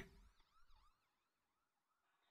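Near silence, with a very faint rising-and-falling siren-like wail in the first second.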